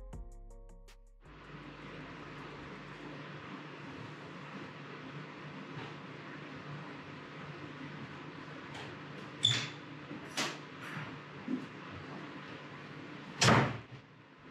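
Background music fades out in the first second, leaving a steady low hum in a quiet garage. A few sharp clicks follow, and near the end a loud door bang as someone comes into the shop.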